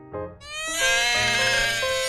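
A cartoon scream sound effect, a long shrill 'uaahh' that starts about half a second in and is held, over background music.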